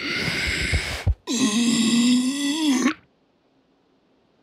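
Cartoon lion's voice trying to roar and failing: a rough, breathy rasp lasting about a second, then after a short break a weak, held groan of about a second and a half that rises slightly at the end. It is a failed, feeble roar rather than a real one.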